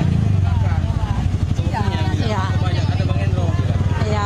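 Motorcycle engine idling close by, a steady low engine note running under people's voices.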